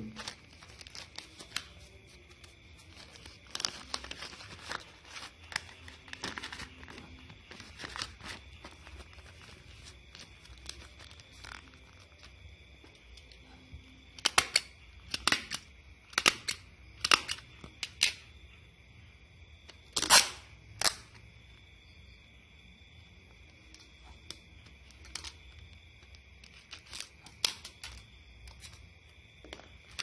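Packaging being handled as soft lures are packed into a parcel: scattered rustles and clicks, with a run of five louder short sharp bursts about halfway through and two more a couple of seconds later.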